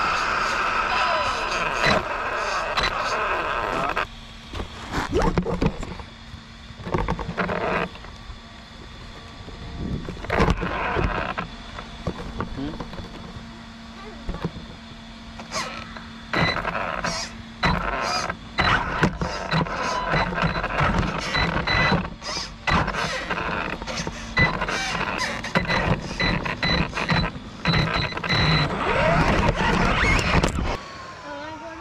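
Electric RC truck driving over rough ground, heard from a camera mounted on it: a thin steady motor whine under frequent clattering knocks and rattles from the chassis and suspension, with quieter stretches when it eases off.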